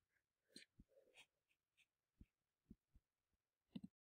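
Near silence: room tone with a few faint, scattered clicks and knocks, a quick cluster of them just before the sound cuts off.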